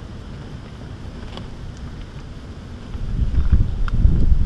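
Wind buffeting the microphone: a low rumble that gusts clearly louder about three seconds in.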